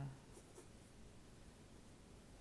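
Faint scratching of a graphite pencil sketching on spiral sketchbook paper, with a couple of short strokes about half a second in.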